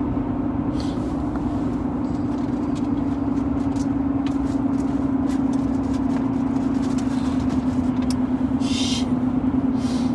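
Steady road and engine noise inside a moving car's cabin, a constant low hum under an even rush, with a short hiss near the end.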